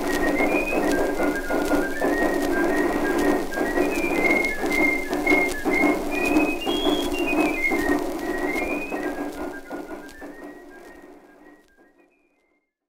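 An archival recording of a whistled tune over musical accompaniment, with clicks and crackle of an old recording throughout. It fades out over the last few seconds.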